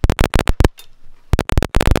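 Rapid clusters of sharp clicks and taps close to the microphone, from a hand pressing the buttons and touchscreen of an Akai MPC Live II. The clicks come in quick bursts at the start, about half a second in, and again for about half a second near the end.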